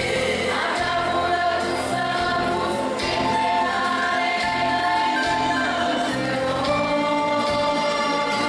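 A large women's choir singing a gospel hymn, holding long sustained notes.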